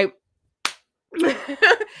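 A single sharp smack of a hand, then a woman starting to laugh near the end.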